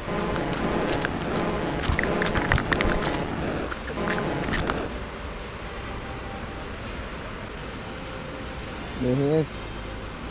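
A voice shouting "I'm gonna kill you, mate!" with crackling clicks through it for about five seconds, then quieter steady street background, and a short rising voice sound near the end.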